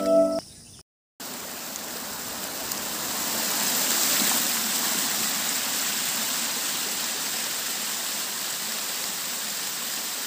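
Water rushing over a small rocky cascade: a steady, even rush that starts after a brief silence about a second in. A few held music tones end just at the start.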